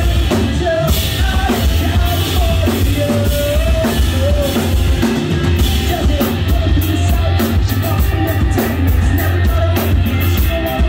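Rock band playing live: drum kit, bass and electric guitar, loud and bass-heavy, with a singer's voice over the band in the first half. Cymbals keep a steady beat from about halfway on.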